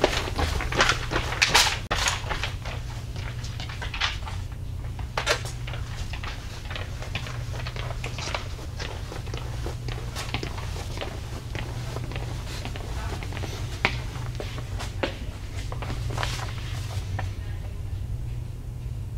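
Footsteps on a hard floor moving away and then coming back, with scattered clicks and knocks of plastic supply bins and packages being searched, over a steady low room hum.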